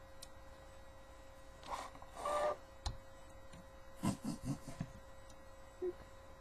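Hard plastic toy parts scraping and rubbing as a Transformers Skywarp figure is handled and transformed, with a sharp click about three seconds in and a quick run of about five knocks around four seconds in.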